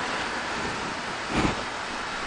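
Steady hiss of the space station's cabin ventilation and equipment noise, with a brief soft thump about one and a half seconds in.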